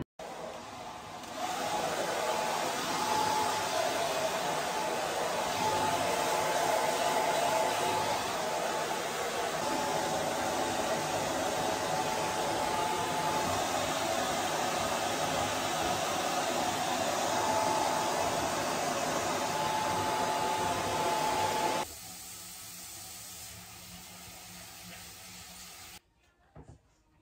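Handheld hair dryer blowing on long wet hair: a steady rush of air with a steady whine in it, coming up to full strength about a second and a half in. It switches off about 22 seconds in, leaving a much quieter background.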